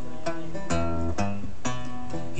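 Guitar strumming chords in a steady rhythm, about two strokes a second, as folk-song accompaniment.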